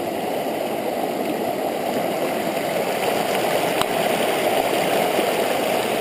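Shallow river water rushing over rocks close by, a steady rush, with a faint click about four seconds in.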